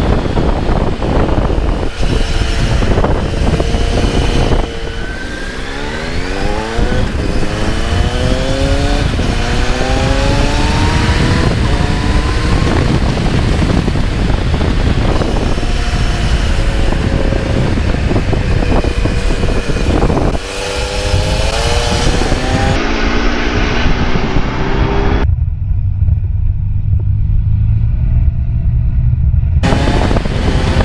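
Kawasaki Z900's inline-four engine accelerating hard, its revs climbing in several rising sweeps as it pulls through the gears, under heavy wind rush on the camera. For the last few seconds the sound turns dull and muffled, leaving mostly a low rumble.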